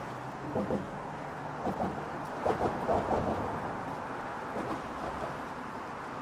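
Steady road traffic noise from cars passing on the bridge deck beside the walkway, swelling briefly about two and a half seconds in.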